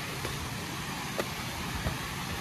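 Outdoor noise while walking on a rocky hill path: uneven low rumble of wind on the microphone over a steady hiss, with a few light steps or knocks on rock.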